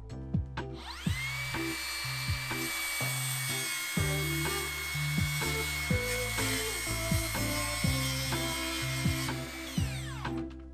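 Makita cordless circular saw spinning up about a second in to a steady high whine as it crosscuts a pressure-treated board, then winding down near the end.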